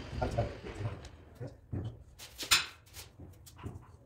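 Scattered short knocks and clicks of hand tools and hands on the granite slab and its wooden frame, the loudest about two and a half seconds in, with a brief pitched squeak-like sound near the start.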